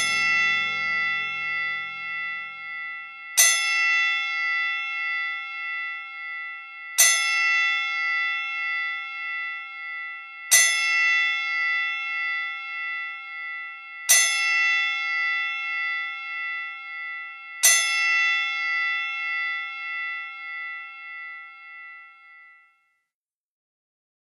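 A bell struck six times at a slow, even pace, about three and a half seconds apart, each stroke ringing on and dying away. The last stroke fades out near the end. Low music fades away under the first stroke.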